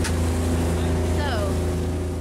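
Motorboat engine running steadily with a low hum, with water rushing past the hull. A brief voice call slides down in pitch about halfway through.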